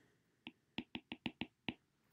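Stylus tip tapping on a tablet's glass screen while handwriting a word: about seven faint, quick clicks.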